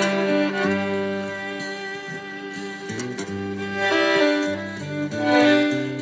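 Instrumental intro of a slow acoustic song: an acoustic guitar with a melody of long held notes over it.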